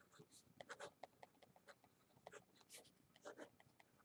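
Faint scratching of a pen writing on paper, in short irregular strokes as words are handwritten.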